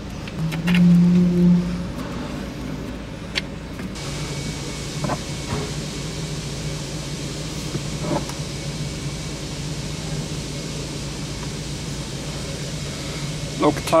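A steady mechanical hum that starts suddenly about four seconds in, with a few light metallic clicks from parts being handled at a car's front suspension.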